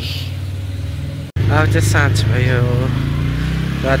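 A person's voice over a steady low rumble. The sound cuts out for an instant about a second in.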